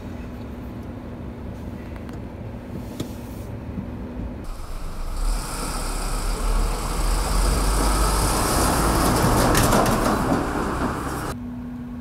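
Heavy dump truck driving past close by: engine and tyre noise with a deep rumble swells over about five seconds, peaks, then falls away. Before it, lower steady road noise of trucks further off.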